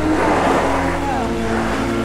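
Background music with sustained tones, mixed with a Jeep Patriot driving past close by. The sound of its engine and its tyres on the dirt track is loudest in the first second.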